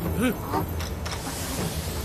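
Cartoon battle soundtrack: a character's brief exclamation about a quarter-second in, over a steady low rumbling sound effect.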